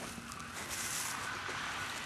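Quiet outdoor background noise: a steady faint hiss with no distinct events.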